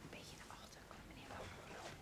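Faint whispered talk: a few soft, short phrases in a hushed room.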